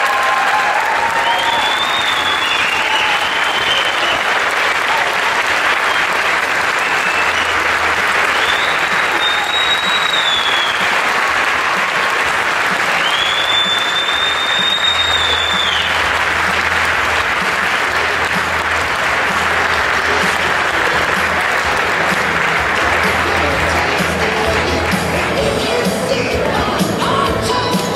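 Large audience applauding steadily throughout, with a few long, high whistles rising above the clapping. Music plays underneath from partway through.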